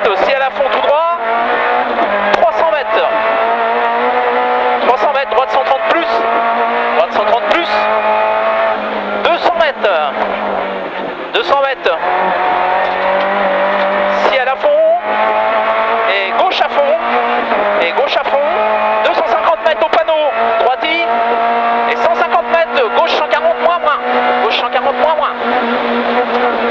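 Renault Clio Ragnotti rally car's four-cylinder engine under hard acceleration, heard from inside the cabin. The revs climb and drop back at each gear change, with a couple of brief lifts off the throttle.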